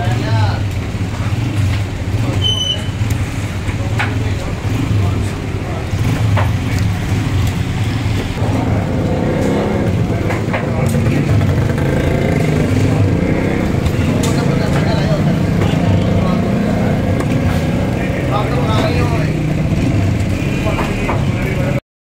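Street-side butcher-shop din: a steady low rumble of road traffic with background voices, and a few sharp knocks of knives striking wooden chopping blocks.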